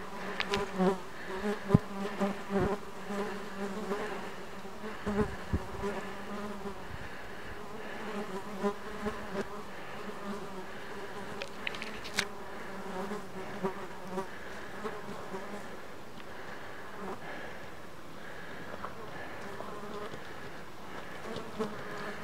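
Steady buzzing of flying insects, a slightly wavering drone that holds the whole time, with a few sharp clicks and knocks scattered through it, most of them in the first few seconds.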